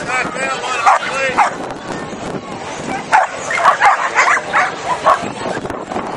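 Flyball dogs barking and yipping in quick runs of high yips, one burst near the start and a denser burst from about three seconds in.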